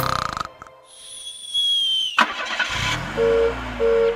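Cartoon sound effects: the song's music ends, then a high whistle glides slowly down in pitch and ends on a sharp hit, followed by a cartoon car engine starting up and two short horn beeps near the end.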